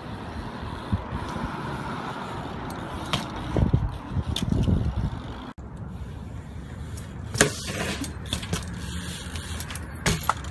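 BMX bike ridden on concrete: tyres rolling, with the rattle of the chain and loose parts and a few sharp knocks from the bike landing on or striking a ledge, over steady outdoor street noise.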